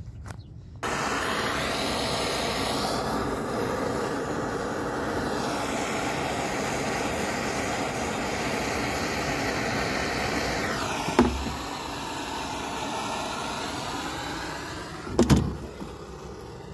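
Gas torch flame hissing steadily. It starts about a second in and stops just before the end, with two sharp knocks, the second just before it cuts off.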